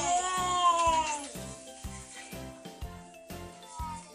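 A child's high-pitched squeal that slides down in pitch over about the first second. It plays over background music with a steady beat.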